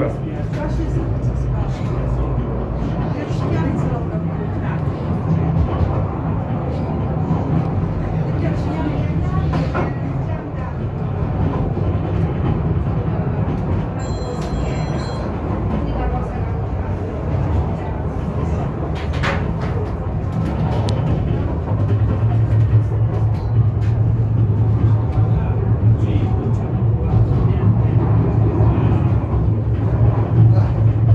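Funicular car running down its rails: a steady low rumble and hum that grows a little louder in the last third, with a short high tone about halfway through.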